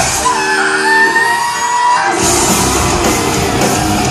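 Heavy metal band playing live in a large hall: the drums and bass drop out for about two seconds under a long held note, then the full band comes back in.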